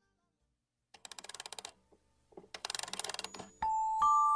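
A silent gap between songs, then two short bursts of rapid clicking, like a ratchet being wound, as the next track begins. A single chime note sounds near the end.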